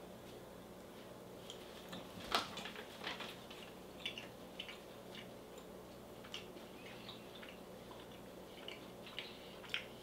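Faint mouth and chewing sounds of two people eating soft chocolate coconut bites, with scattered small clicks and ticks, the sharpest about two and a half seconds in, over a low steady hum.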